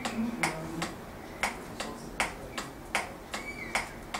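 Sharp clicks or taps repeating irregularly about twice a second, with a faint short whistle-like squeak near the start and again near the end.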